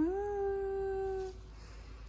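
A single drawn-out vocal note that rises at the start, then holds one steady pitch for about a second and a half before fading.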